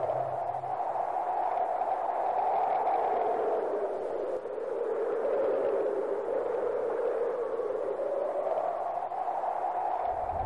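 A rushing, hiss-like noise whose pitch slowly rises and falls, highest about two seconds in and again near the end. A low hum fades out in the first second.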